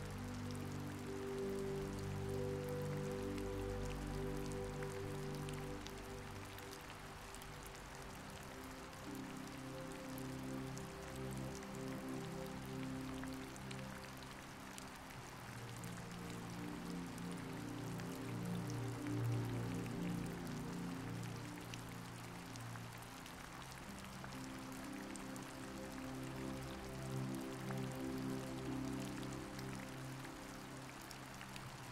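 Steady rain pattering, mixed with soft, slow background music of held low chords that shift every few seconds.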